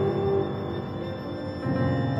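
Symphony orchestra playing atonal twelve-tone music in a dense texture of sustained, clashing pitches. A held note drops out about half a second in, and a louder entry swells in near the end.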